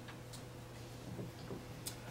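Quiet room tone with a steady low hum and a few faint ticks spread through it.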